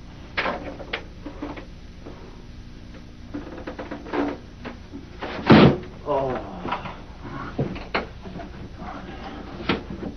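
Small knocks and clatter of things handled on a desk in a small room. A loud sudden noise comes about halfway through, followed by a man's voice making sounds without clear words.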